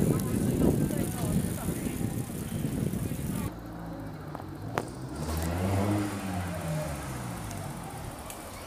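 Street noise with a low rumble, then a car passing close by from about five seconds in, its engine note rising and then falling as it goes past.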